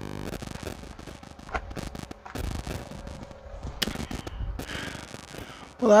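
Shovel digging into soft loose dirt and tipping it into a sandbag held open in a plastic bucket: an irregular run of scrapes, crunches and sharp knocks.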